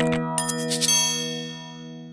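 Closing jingle of a logo animation: a held chord with bright, ringing chime-like strikes about half a second in, all ringing out and fading away.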